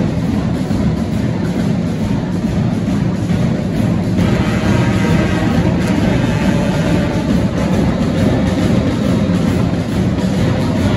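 A school marching band of clarinets, saxophones, brass and drums playing together, a dense sound heavy in the low end. About four seconds in, the higher woodwind and brass notes come through more strongly.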